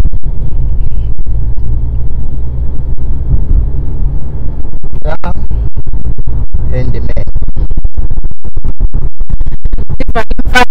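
Low rumble inside a moving car, picked up by a handheld clip-on microphone, with rubbing on the microphone. About halfway in, music with a quick, even beat comes in, with a few brief words.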